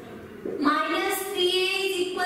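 Only speech: a woman's voice talking from about half a second in, in long drawn-out tones.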